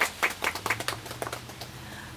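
A small group of people clapping, the separate claps distinct and irregular, dying away near the end.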